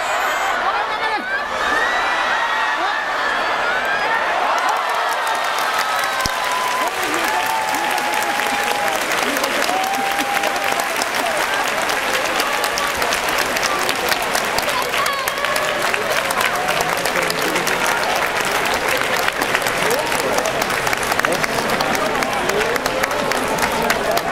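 A large crowd of spectators applauding and cheering after a sumo bout, with voices calling out over the clapping. The clapping thickens into dense, steady applause a few seconds in.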